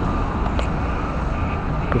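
Downtown street traffic noise: a steady, even rumble of passing vehicles with no distinct events.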